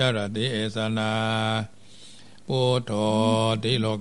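A man chanting Pali verses in Thai Buddhist style, holding long syllables on one low, steady pitch, with a short pause for breath about halfway through.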